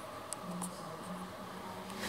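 Low, steady electrical hum in the cab of a stationary funicular car, cutting in and out every half second or so, with a few faint ticks.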